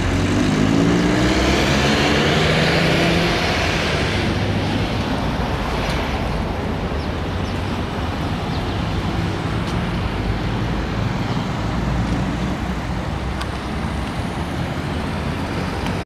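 A motor vehicle close by, its engine rising in pitch as it pulls away over the first few seconds, then the steady noise of street traffic.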